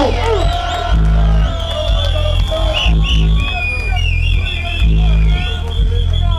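Dub played loud through a sound system: a heavy sub-bass line in long held notes, with echoing, wavering high tones from the live effects over it.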